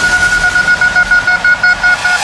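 Electronic dance music breakdown: the kick drum drops out, leaving one sustained horn-like tone that pulses about four to five times a second.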